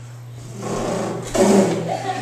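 A man's vocal sound effect: a noisy mouth sound that builds from about half a second in and is loudest around a second and a half.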